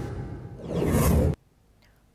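News-broadcast transition whoosh: a rising swoosh sound effect that cuts off suddenly after about a second and a half.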